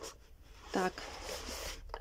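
A cardboard gift-box lid sliding off its box: a soft papery scrape lasting about a second, starting about a second in.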